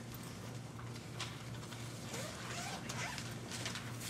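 Room tone in a hall: a steady low hum, with scattered faint rustles and clicks.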